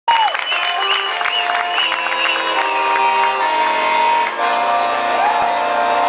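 Piano accordion playing held chords with a live band, while a crowd whoops and cheers over the first couple of seconds.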